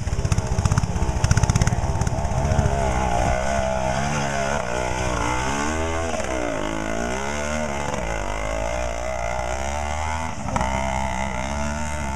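Two-stroke engines of classic twin-shock trials motorcycles working up a rocky stream gully. The revs rise and fall as the riders feed the throttle over the rocks, with a deep dip and climb about halfway through.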